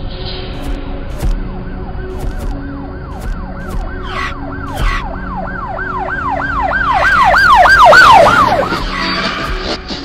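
Police siren sound effect: a fast, repeating rising-and-falling wail, about three sweeps a second, that swells to its loudest about eight seconds in and then fades.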